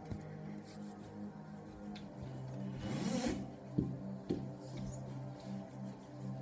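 Background music with a steady bass line. About three seconds in comes a brief rasping rub, followed by two sharp thumps half a second apart.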